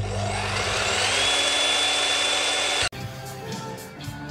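A handheld electric power tool starting up: its motor whine rises in pitch over about a second, runs steady, then cuts off suddenly near three seconds in. Quieter music follows.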